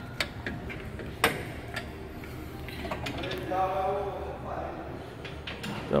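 Workshop sounds: scattered light clicks and knocks of tools and parts being handled under a vehicle, with a faint voice in the background about three to four seconds in.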